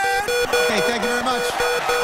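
A short, pulsing studio music cue plays, with voices calling out over it from about halfway in.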